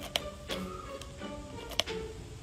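Two sharp clicks about a second and a half apart from a headphone plug being worked into a PS4 DualShock 4 controller's headset jack, with faint background music underneath.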